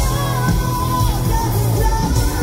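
Hard rock band playing live through a PA in a club hall: pounding drums and bass under electric guitar and keyboards. Over the band a high lead vocal holds a note and then slides down about a second in.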